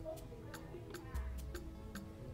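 Background film score: held tones under a steady ticking beat like a clock, about four or five ticks a second.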